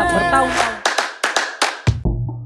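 Music: a held chord ends about half a second in and is followed by a quick run of about six sharp hand claps, then a drum kit comes in at the very end.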